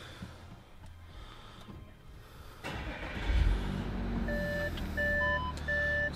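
An Audi A6 3.0 TDI V6 turbo diesel, heard from inside the cabin, is push-button started about three seconds in and settles into a steady idle. About a second later the parking sensors begin beeping in a repeating two-tone pattern, about once every 0.7 s, as reverse is selected.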